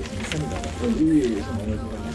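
Indistinct talking, with rumbling and rustling from a camera carried by someone who is walking.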